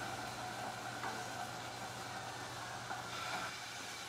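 Sea scallops sizzling in a hot non-stick pan on a gas burner at medium-high heat: a steady hiss of searing.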